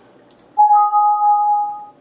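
Windows alert chime from the computer as a warning dialog pops up: a two-note electronic ding about half a second in, the higher note joining just after the first, ringing for about a second and then fading.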